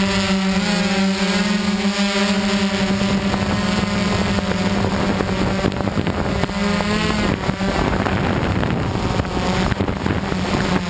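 DJI Flame Wheel F550 hexacopter's six brushless motors and propellers humming steadily, heard close up from its onboard camera, over a rush of wind noise. The pitch wavers with the throttle about a second in and again about seven seconds in.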